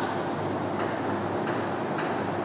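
Steady background noise with a low hum and no speech.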